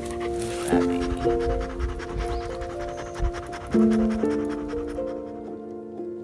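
Background music of slow, sustained chords that change every second or so, over a golden retriever puppy panting; the panting drops away about five seconds in, leaving the music alone.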